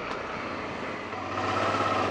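Honda XL650V Transalp's V-twin engine running on a dirt track, with tyre and wind noise; the engine sound gets louder about a second and a half in.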